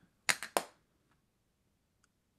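A hard plastic ink pad tapped three times in quick succession against a clear stamp mounted in a stamp positioner's acrylic lid, inking it for a second impression: three sharp clacks.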